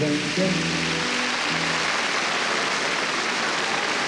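Large concert audience applauding over the last notes of a song; the music fades after about a second and a half, leaving steady applause.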